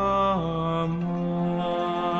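Male singer holding long sung notes, stepping down to a lower held note about half a second in, over a soft musical accompaniment.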